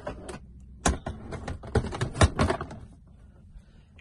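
A quick run of clicks and knocks as a flat-screen TV on a swing-out tilt wall bracket is pushed closed against the cabinet, the loudest knocks about one and two seconds in, dying away before the end.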